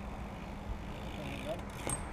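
BMX bike rolling across a concrete skate bowl: a steady low rumble, with one sharp clack near the end.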